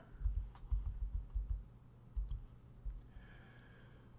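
Computer keyboard typing a short word: a quick run of light keystrokes through the first couple of seconds, then a tap or two near three seconds.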